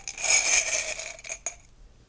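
Small metal charms rattling and clinking as they are shaken in a ceramic mug, stopping about one and a half seconds in.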